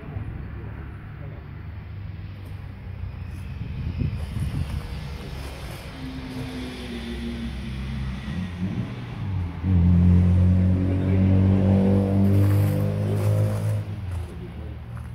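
A motor engine running close by, with a low rumble throughout. About ten seconds in it suddenly gets much louder, a steady low hum that creeps up in pitch, and it drops away just before the end.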